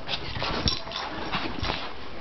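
Dogs play-fighting, a scuffling, rustling tussle with two sharp knocks, about two-thirds of a second and a second and a half in.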